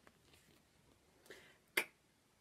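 A woman voicing the phonics sound /k/ once near the end: a single short, sharp, breathy 'k', with no vowel after it. Before it there is only faint room tone and a brief soft hiss.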